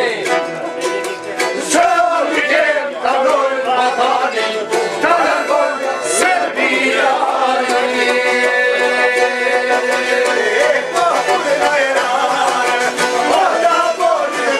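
Albanian folk ensemble playing a tune on long-necked plucked lutes (çifteli), violin and accordion, the plucked strings over the accordion's sustained chords.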